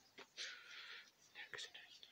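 Faint whispering close to the microphone: a soft hiss lasting about half a second near the start, then a couple of short breathy sounds about a second and a half in.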